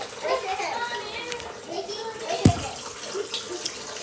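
Faint background voices over a steady hiss, with a single sharp click about two and a half seconds in.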